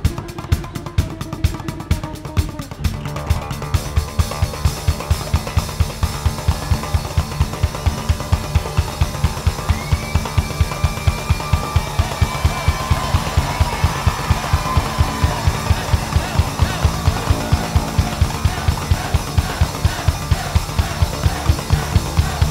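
Upright double bass played as a drum: drumsticks beat on its strings while a second player frets the neck, giving a steady, fast pulse of low pitched strikes. Quick dry stick clicks fill the first few seconds, and a high held note sounds over the rhythm in the middle.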